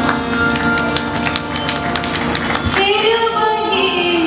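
Live ghazal music: quick tabla strokes over sustained held notes. A sung melody line comes in about three seconds in.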